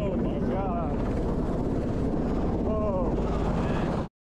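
Military helicopter running close by: a loud, steady rotor and turbine rumble. Short shouted voices cut through it about half a second in and again near three seconds in.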